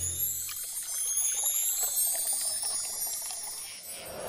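Liquid pouring in a thin stream from a tipped pot, trickling steadily, with high shimmering tones rising over it.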